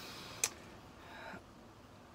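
A pipe smoker's faint breathing out, with one sharp click about half a second in.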